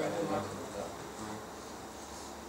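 A faint, steady low buzzing hum, after a man's voice trails off in the first half-second.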